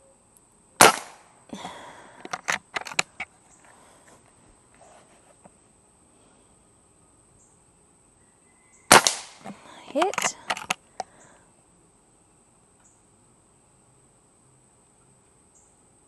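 Two shots from an Umarex Komplete NCR .22 nitro-powered air rifle, about eight seconds apart. Each is a sharp crack followed by a second or two of smaller clicks and knocks.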